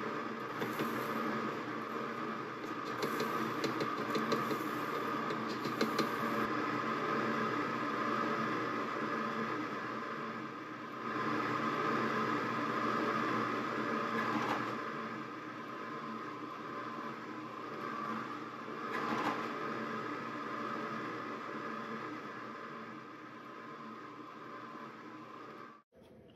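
Breville compressor ice cream maker running, its motor and paddle giving a steady hum as it churns the cream mixture. Faint ticks in the first few seconds fit granulated xylitol being spooned in through the lid.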